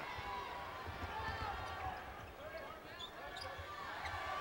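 Basketball being dribbled on a hardwood court under steady arena crowd noise, with faint voices in the crowd.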